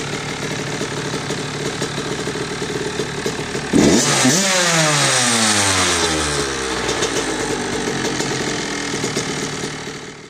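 Honda CR85 single-cylinder two-stroke engine idling, then given one sharp throttle blip about four seconds in, its revs falling away over the next few seconds before it settles to a steady idle.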